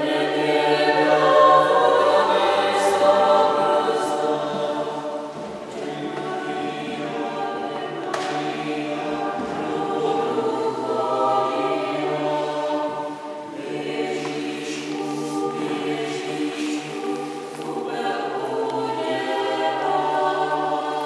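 Small vocal ensemble singing in sustained chords, with a low note held steadily underneath.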